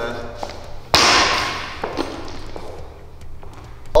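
Loaded barbell with bumper plates dropped from the front rack onto the rubber gym floor: one loud thud about a second in that dies away over about a second, then a smaller knock a second later as it settles.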